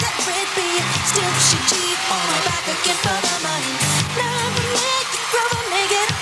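Live pop concert music: a steady beat with heavy bass and a wavering melody line on top.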